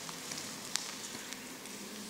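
Quiet room tone: a steady hiss with a faint click a little under a second in.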